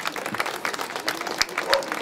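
A small group of people applauding, with individual hand claps heard.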